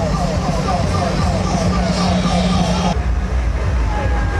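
Engine of a passing carnival parade float running with a steady low hum, under a rapid repeating high falling chirp, about three or four a second, with voices around it. The sound cuts off suddenly about three seconds in.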